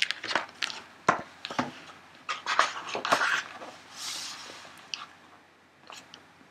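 A large paper picture book being handled and put away: paper rustling, with several sharp knocks and clicks over the first few seconds and a longer rustle about four seconds in.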